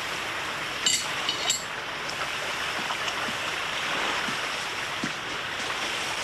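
Steady rushing of water, with a couple of faint clicks about a second in.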